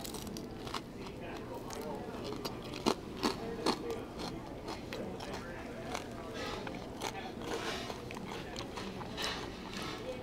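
A person biting and chewing crispy pork belly, with a few short sharp clicks scattered through it, over a steady low room hum.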